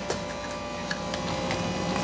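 Steady hum of café equipment with a few light, scattered clicks as plastic iced-coffee cups are handled at the espresso machine counter.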